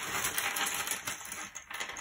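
Loose cardboard jigsaw puzzle pieces clattering as hands stir and push them around on a table: a dense run of small clicks that thins out near the end.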